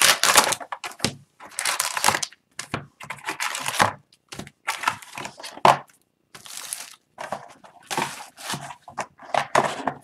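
Cardboard hobby box of hockey cards being handled and its foil-wrapped packs pulled out and stacked. Irregular bursts of crinkling wrappers and cardboard rustling and scraping, with short pauses between them.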